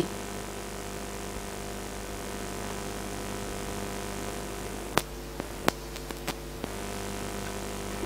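Home-built vacuum-tube Tesla coil running off the mains, giving a steady hum. A few sharp clicks come about five to six and a half seconds in.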